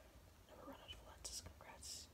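Faint whispering: a woman whispering to herself while reading, with two brief hissing 's' sounds near the end.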